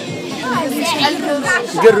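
Speech: a boy answering a question in Moroccan Arabic, with chatter from other voices around him.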